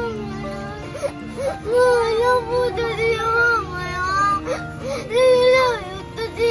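A young girl crying hard in several long, wavering wails, with sobbing catches between them.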